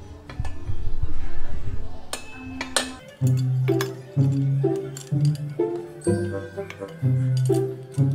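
Metal clinks and knocks from an exhaust elbow pipe being handled and fitted to the scooter, then background music with a steady repeating bass line coming in about three seconds in and carrying on.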